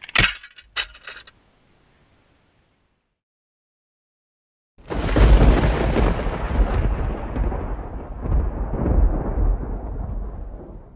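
After a brief tail of voice and a couple of clicks, silence; then about five seconds in a loud, deep rumble starts suddenly and rolls on, slowly thinning out, like rolling thunder.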